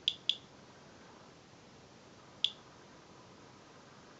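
Inspector Alert Geiger counter clicking, each click a detected radiation count. There are three sharp, high clicks: two close together right at the start and one about two and a half seconds in.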